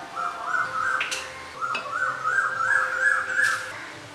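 A bird calling: a quick run of short notes, each rising and falling, in two bursts with a brief break between them, with two sharp clicks among them.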